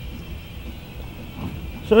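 Faint steady hum of the Corvair's electric windshield wiper motor running, driven through the new wiper switch once it has been properly grounded.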